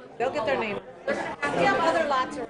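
Indistinct talking and chatter: voices speaking off-mic, two short bursts of speech.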